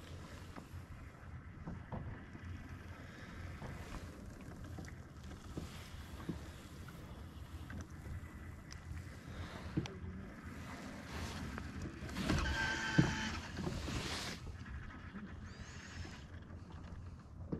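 Small-boat ambience on open water: water lapping against a bass boat's hull with a low wind rumble on the microphone. About twelve seconds in, a brief louder sound with a pitched tone stands out for a second or two.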